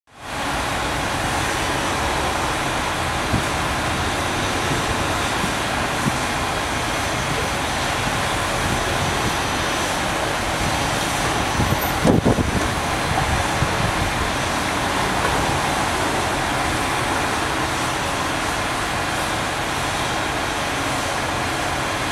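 Steady outdoor rumble and hiss of distant traffic-like background noise, with a short cluster of knocks about halfway through.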